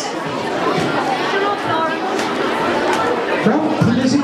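Many voices chattering at once in a large hall, students at their tables talking among themselves, with no single voice standing out.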